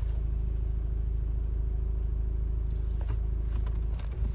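Steady low rumble of a car's engine and tyres heard from inside the cabin while driving slowly in traffic, with a faint steady hum above it.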